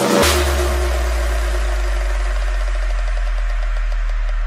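Background electronic music: a crash hit just after the start, then a long, steady deep bass note held under faint high texture.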